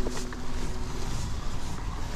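Wind rumbling on the microphone, with the crunch and roll of bicycle tyres on gravel as the e-bike rides along.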